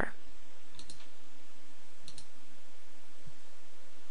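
Soft computer mouse clicks, one pair about a second in and another about two seconds in, over a steady background hiss.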